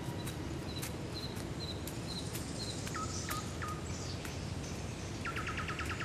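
Forest ambience with birds calling over a steady background hiss: a run of short, high chirps repeated about twice a second in the first few seconds, a few lower notes around three seconds in, and a fast trill near the end, with scattered faint clicks.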